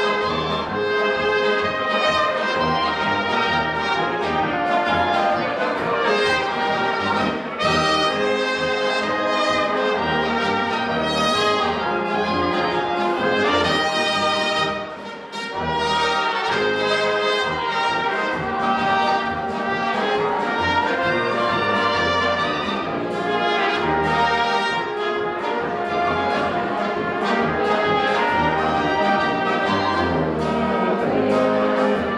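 Czech brass band (dechovka) playing a tune, with a flugelhorn and a trumpet carrying the melody over tubas, baritone horns and drums. There is a brief drop in the playing about halfway through.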